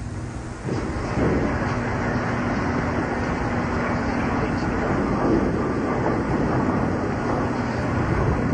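Steady murmur and background din of a bowling-center crowd while a bowler sets up; a faint steady hum sits under it for a few seconds early on.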